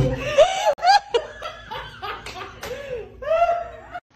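A man laughing in several separate bursts, the loudest about a second in and again near the end.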